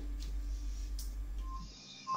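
Quiet room tone in a pause between speakers: a steady low hum with a faint click about a second in. The hum cuts off shortly before the end.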